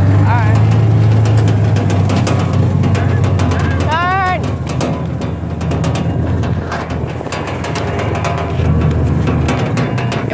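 John Deere Gator utility vehicle running steadily under way with a low engine drone, with many short knocks and rattles from the ride. A voice calls out briefly about four seconds in.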